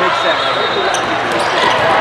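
Indoor volleyball rally: players' voices calling out, with a few sharp ball hits.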